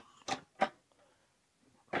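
A hard plastic rod stand being slid sideways onto the mounting rail of a Meiho VS-7055N tackle box: two short plastic knocks about a third of a second apart.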